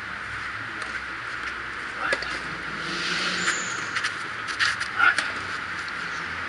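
Tennis play on an outdoor clay court: a few scattered sharp knocks of ball and racket over a steady background hiss, the loudest about five seconds in.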